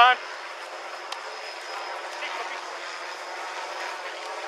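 Steady outdoor background noise heard through a body camera's microphone, thin and with no bass. There is a faint click about a second in and faint distant voices around two seconds in.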